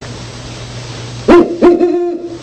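Great horned owl hooting: two low hoots in quick succession starting about a second in, the second held longer, over a faint low hum.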